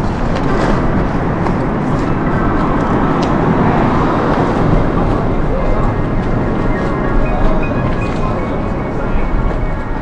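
Steady, loud rushing noise of vehicles, with a faint high thin squeal in the last few seconds.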